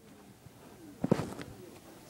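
Handling noise as a phone is moved against shirt fabric: a short cluster of knocks and rustles about a second in, over low background hiss.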